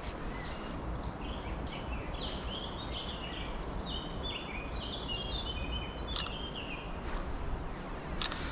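A songbird singing a long run of short high notes, some stepping down in pitch, over a steady low background rumble. There is one sharp click about six seconds in.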